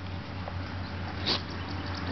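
Small dog snuffling through long grass, with one short, sharp puff of breath through its nose a little over a second in.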